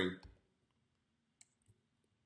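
Two faint computer mouse clicks about a third of a second apart, in near silence, following the end of a man's sentence.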